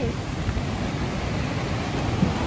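Steady rushing noise of a waterfall, with low, uneven rumbling of wind on the microphone underneath.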